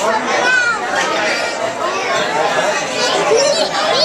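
Many people talking at once, with high children's voices among them: the steady chatter of a busy, crowded dining room.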